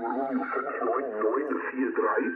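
Single-sideband voice transmission on the 40-metre amateur band, received and played through an HF transceiver's loudspeaker: continuous talk, thin and narrow, with the low and high end cut off.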